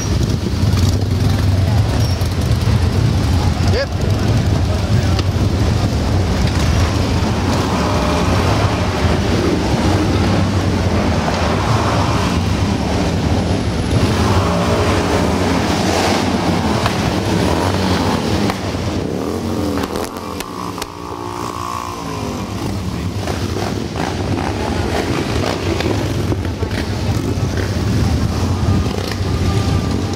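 A column of motorcycles, mostly Harley-Davidson V-twins, running at low speed in a steady deep rumble, with engines revving and passing so the pitch rises and falls through the middle.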